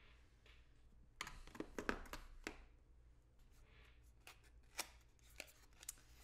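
Faint clicks and light knocks of hands handling a small plastic lip-plumper tube. A quick cluster of them comes between one and two and a half seconds in, then a few scattered clicks.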